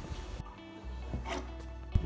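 Quiet background music laid over the footage, with no speech.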